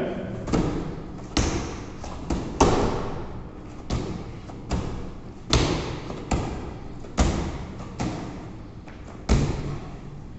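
Heavy medicine ball thrown back and forth between two partners at a fast pace: a dozen or so sharp thuds as it slams into the hands on each catch and throw, about one a second.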